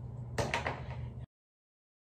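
A brief clatter of a few quick knocks close together about half a second in, over a low steady hum. The sound then cuts off to dead silence just over a second in.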